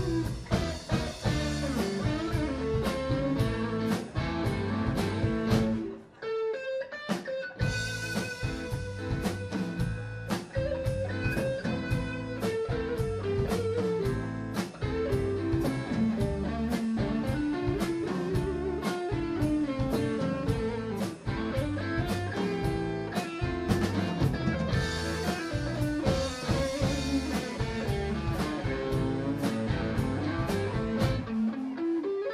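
A live blues band playing: electric guitars over bass and a drum kit keeping a steady beat. About six seconds in the band drops out for a second and a half, then comes back in.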